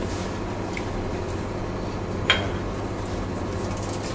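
A single light clink of small kitchenware about two seconds in, over a steady low hum of kitchen equipment.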